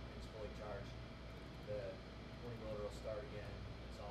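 Faint speech from an audience member asking a question away from the microphone, over a steady low room hum.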